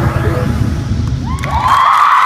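Dance music with a heavy beat stops about a second and a half in, and a group of girls breaks into high-pitched screaming and cheering as the routine ends.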